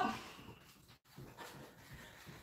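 Faint, soft footfalls of a person doing heel flicks on the spot on a rug, with light breathing.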